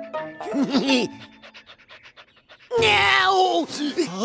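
Cartoon bulldog panting in quick, short, even breaths. About three seconds in, a loud falling cry of dismay from a man's voice cuts across it.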